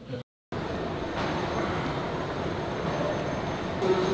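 A steady, even background rush of building ambience, following a brief dropout to silence just after the start.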